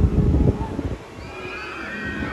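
A low rumble at the start, then several overlapping high, wavering screams from roller coaster riders.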